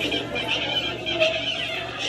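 Indistinct background voices and noise of a busy restaurant dining room.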